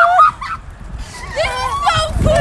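A young woman's high-pitched, wordless squeals with a honking, nasal quality, loudest right at the start and again in the second half, as she comes round giddy from sedation after wisdom-teeth removal.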